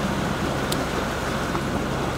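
Steady rush of wind and sea on an open sailing yacht, with a low steady drone underneath.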